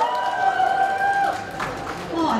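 A woman's voice over a handheld microphone draws out the end of an introduction in one long held call lasting over a second, then stops.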